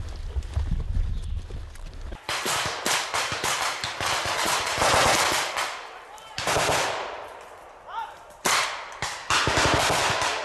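Rapid bursts of automatic rifle and machine-gun fire, starting about two seconds in and coming in clusters of quick shots with short pauses between. A low rumble comes before the shooting begins.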